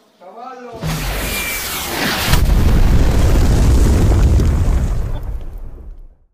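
Action Movie app's missile-strike sound effect: a loud rushing noise from about a second in, then a louder explosion at about two and a half seconds with a long deep rumble that fades away near the end.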